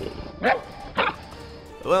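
A dog barking twice, two short barks about half a second apart, over background music.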